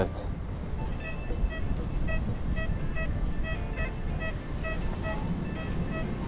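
XP Deus 2 metal detector sounding short, buzzy target beeps, repeated two or three times a second, as its coil is swept over a freshly dug hole in beach sand. The beeps signal a metal target still under the coil. A steady low rumble runs underneath.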